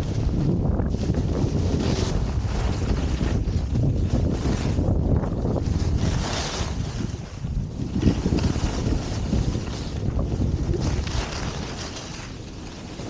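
Wind rushing over the microphone at skiing speed, with the hiss of skis carving on groomed snow swelling with each turn, roughly every couple of seconds.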